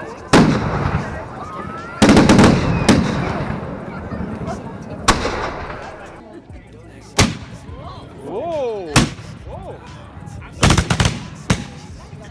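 A series of loud black-powder gun shots, about eight of them at irregular intervals, each echoing briefly, with voices between the shots.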